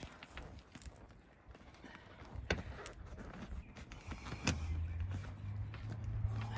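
Faint handling of an MGB's packaway soft-top hood as its door-side attachment point is pushed into place: a few sharp clicks, then a low steady hum starting about three-quarters of the way through.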